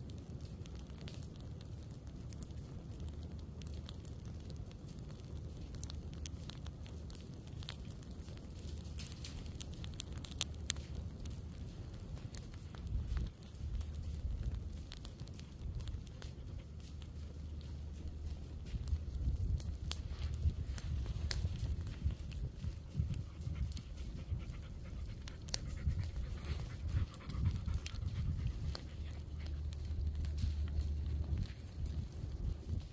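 Low flames of a prescribed ground fire burning through dry pine needle litter, giving scattered sharp crackles, over an irregular low rumble of wind on the microphone.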